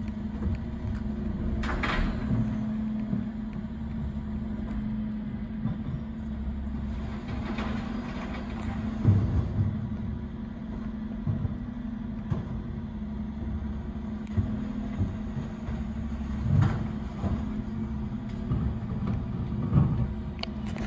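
Dennis Eagle refuse collection lorry running stationary with a steady low hum and rumble, while bins are emptied at the rear. Occasional short knocks and clunks sound over it.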